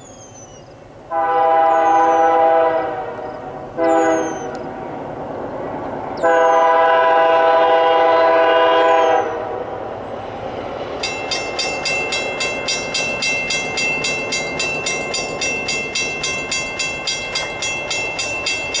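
Approaching diesel freight locomotive's multi-chime air horn sounding a grade-crossing signal: a long blast, a short one, then another long one of about three seconds. From about eleven seconds in, a level-crossing warning bell rings steadily, about three strikes a second.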